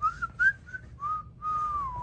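Australian shepherd whining in a thin, high, whistle-like voice: a few short notes, then one longer note that dips and rises sharply at the end.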